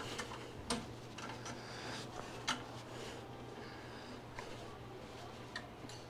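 Faint, irregular metallic clicks as a fastener on a swing-arm TV wall mount is tightened down to lock its tilt, with a low hum underneath.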